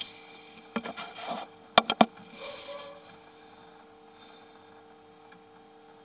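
Handling knocks and button clicks on a sewer inspection camera's control unit as the recording is being stopped: a few soft knocks about a second in, then three sharp clicks in quick succession about two seconds in, followed by a brief rustle. After that only a faint steady electrical hum remains.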